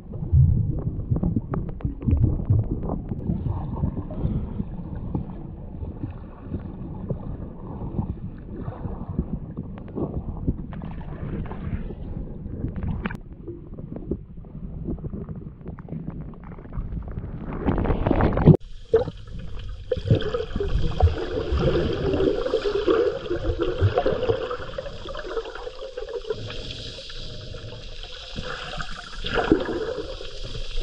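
Underwater recording of sea water moving around a submerged camera: a low, churning rumble with scattered knocks. About 18 seconds in it cuts abruptly to a brighter, hissier underwater sound.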